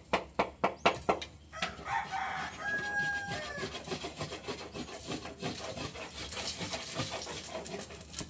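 Chickens: a quick run of sharp, loud clucks, then a short drawn-out call about three seconds in, followed by steady clucking.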